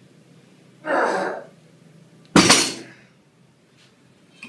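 Two loud, forceful breaths from a person about a second and a half apart. The second starts suddenly and is the louder of the two.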